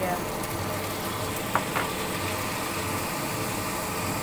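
Oil sizzling steadily in a wok as strips of fresh bamboo shoot are added to fry, over a steady low hum, with two short clicks about one and a half seconds in.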